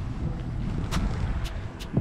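Steady low outdoor rumble with three faint sharp clicks, the first about a second in.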